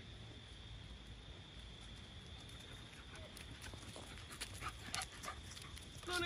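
A dog's paws crunching on a gravel path as it trots close by, a quick run of steps in the second half, over a faint steady high-pitched tone.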